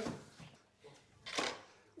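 A ruler thrust into water, a short splash about a second and a half in.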